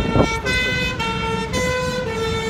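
Two-tone emergency vehicle siren, its note switching back and forth between pitches about every half second, over street noise.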